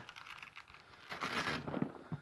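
Hands working the fabric carry handle and strap of a soft tackle bag: a run of fine crackling rustle that builds to its loudest just over a second in.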